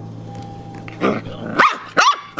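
Brittany puppy giving a few short, high-pitched barks in the second half, the loudest near the end, as it plays at attacking the camera.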